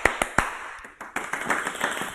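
Hand claps in a quick rhythm during the first half-second, then fainter, sparser claps and taps.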